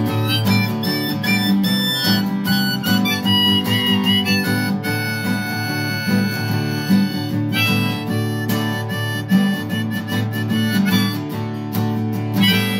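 Harmonica played in a neck rack over a strummed acoustic guitar, an instrumental break without singing. The harmonica holds a long steady chord about five seconds in while the strumming eases, then the rhythmic strumming picks back up.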